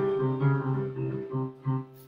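MIDI playback of a composition from music notation software: a long held melody note over a bass line that keeps repeating the same figure.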